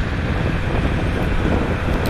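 Steady wind hiss on a helmet-camera microphone that has lost its foam windscreen on one side, from riding a motorcycle through traffic, with the low sound of the bike and the road underneath.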